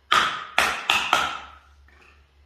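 A clear plastic cup knocked against a hard surface four times in quick succession, each knock with a short hollow ring.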